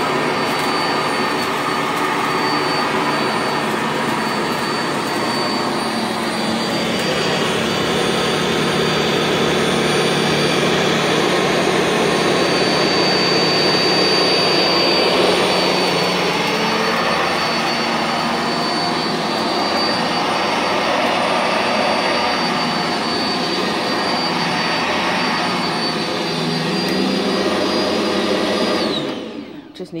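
Sanitaire SC679J commercial upright vacuum cleaner running on carpet: a steady motor noise with a thin high whistle over it. It is switched off near the end, and the noise falls away quickly.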